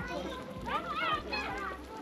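Children's voices chattering and calling out at play, high-pitched and not close to the microphone, with no clear words.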